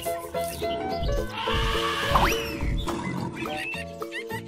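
Children's background music with an animal call over it about a second in: deep rumbles and a sharp squeal that rises and falls, lasting about two seconds.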